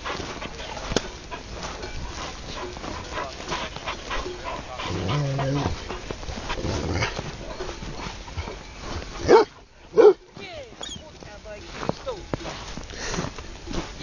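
A large flock of sheep moving and grazing in snow, a steady mass of small clicks and rustles with a low bleat-like call in the middle. Two short, loud barks from a dog come about half a second apart, a little past two-thirds of the way in.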